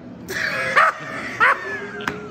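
A man laughing hard at a joke, in a few short high-pitched bursts.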